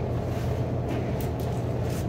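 Steady low hum of room background noise in a pause between speech, with a couple of faint ticks about a second in.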